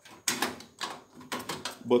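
A graphics card being handled inside a steel PC case as it is lined up and pushed into its PCI Express slot: a few short clicks and knocks of the card's metal bracket and edge against the case and slot.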